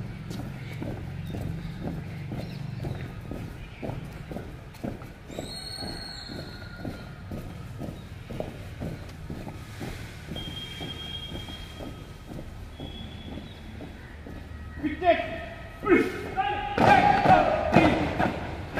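A squad of cadets marching in boots on a paved brick path, their footfalls in a steady rhythm. Near the end, loud shouted drill commands ring out and the squad halts.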